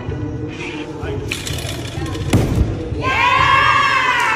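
A gymnast lands a dismount from the uneven bars on a thick crash mat: one dull thud about two and a half seconds in, over background music.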